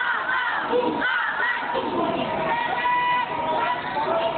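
A marching squad of young students shouting a drill call together in unison, loudest in the first second and a half, over a crowd's background noise.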